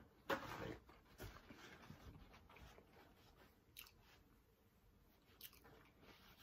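Faint close-miked chewing of a mouthful of toasted fish sandwich. One louder mouth noise comes about a third of a second in, followed by soft chewing and a few small clicks.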